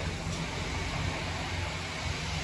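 Steady low diesel engine hum from parked semi trucks idling, under an even hiss of outdoor noise.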